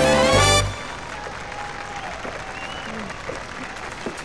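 A show song with brass ends on a held final chord with a rising flourish, cutting off under a second in. Applause follows, steady and quieter, with faint voices in it.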